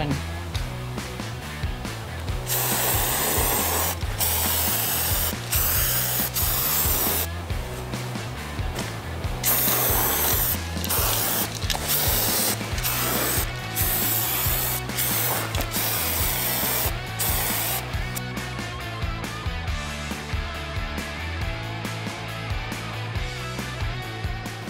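Aerosol spray-paint can hissing in a series of bursts, each a second or two long, with short gaps between them, stopping about three-quarters of the way through. Background music with a steady bass line runs underneath.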